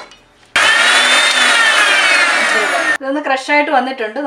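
Electric mixer grinder running in short bursts for about two and a half seconds, grinding almonds in its steel jar; its motor whine rises a little and then falls before it cuts off sharply.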